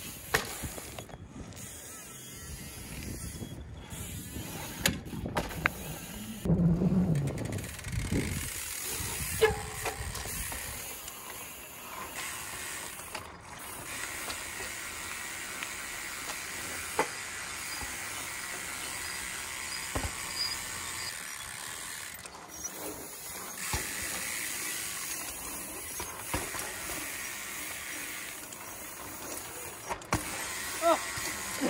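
Trials bikes hopping and rolling on concrete: scattered sharp knocks from tyre landings over a steady hiss. Low wind rumble on the microphone fills roughly the first ten seconds.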